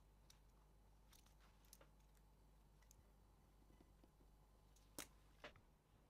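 Near silence with scattered faint clicks from a utility knife blade cutting soft leather along a template, and two sharper clicks near the end.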